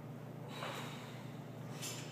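A lifter's forced breathing while pressing a barbell up from the chest on a bench: a noisy breath out about half a second in and a shorter, sharper one near the end.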